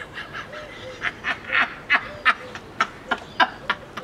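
A man's breathy laughter: a string of short, hissing bursts, about three a second.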